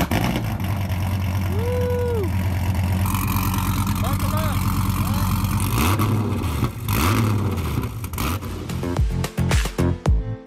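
Dodge Viper's V10 engine running at a low steady idle, then revving up and falling back twice as the car pulls away.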